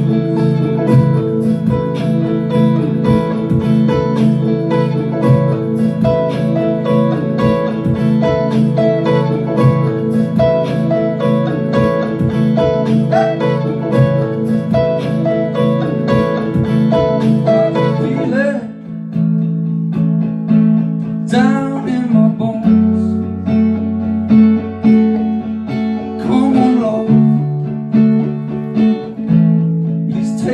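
Live guitar instrumental built from layered looped guitar parts, strummed and picked, through a loop pedal. About two-thirds of the way through, the layers drop out suddenly, leaving held low notes and sparse single picked notes with a few bends.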